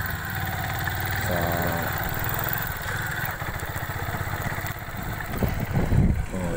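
A small motorcycle engine running steadily at low speed, a low, even putter.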